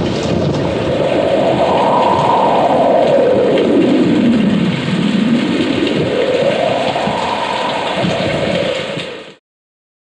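Rainstorm: steady heavy rain with thunder and a howl that slowly rises and falls twice, cut off suddenly near the end.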